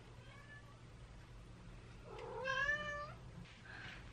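A single faint meow, as of a domestic cat, about two seconds in: one pitched call that rises and then holds for about a second.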